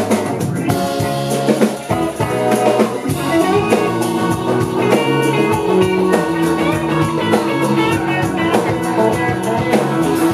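Live band playing a soul song: electric guitar over a drum kit and keyboards, an instrumental stretch with no singing.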